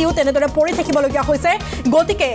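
A voice reading news narration over a steady background music bed.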